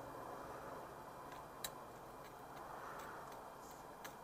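Faint crackle of a charcoal grill with a whole red snapper cooking on it: a few scattered sharp ticks and pops over a low steady hiss.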